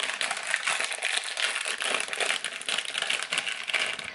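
Thin clear plastic packet crinkling continuously as hands handle it, a dense crackle of small clicks.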